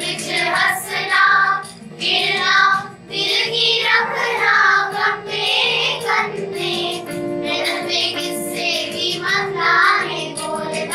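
A class of children singing a Kashmiri folk song together in phrases, over a steady electronic keyboard accompaniment.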